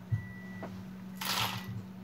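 Metal costume jewelry clinking and jangling as a heap of it is handled, with a couple of light clicks and a short rattle about halfway through, over a steady low hum.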